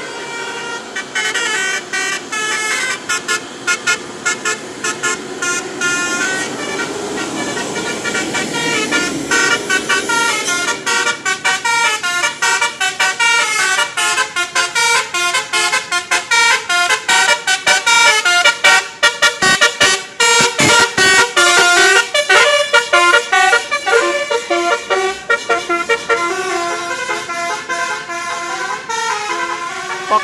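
Bus telolet horn playing quick runs of melodic notes, jumping rapidly from pitch to pitch, louder from about halfway through as the bus comes closer.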